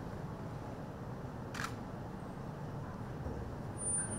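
Steady low room noise with a single camera shutter click about one and a half seconds in.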